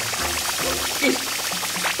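Chopped onion sizzling as it fries in a hot pan, under light background music.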